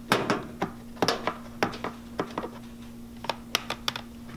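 A plastic instrument cassette clicking and knocking as it is handled and set down on a plastic tray: a quick run of sharp clicks at the start, more about a second in, and a few lighter taps near the end, over a steady low equipment hum.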